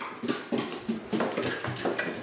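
Quick steps on hardwood stairs and floor, a rapid even run of knocks about five a second.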